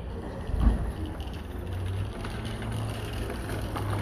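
Outdoor street noise: a low vehicle rumble that settles into a steady engine hum about halfway through, with one low thump just under a second in and faint footsteps on block paving.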